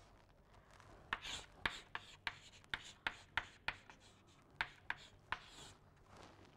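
Chalk writing on a chalkboard: an irregular run of sharp taps and short scratches, starting about a second in.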